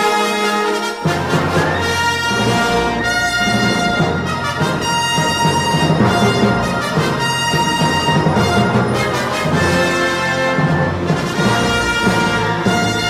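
Orchestral music led by brass, with the lower instruments coming in fully about a second in and then playing on steadily.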